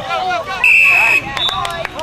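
Referee's whistle blown in one steady, shrill blast of about half a second, a little over half a second in, signalling the play dead. Spectators' shouting voices run underneath.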